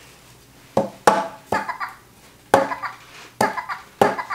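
Talking McDonald's Happy Meal Minion toy, vampire Stuart, playing its recorded Minion laugh through its small speaker in several short bursts, each starting sharply.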